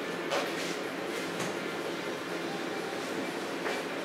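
Palette knife scraping oil paint across a canvas in a few short strokes, over a steady background noise.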